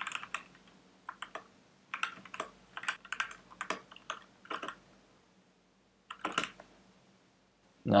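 Computer keyboard typing: a run of quick keystrokes through the first five seconds, a pause, then a short burst of keys a little after six seconds.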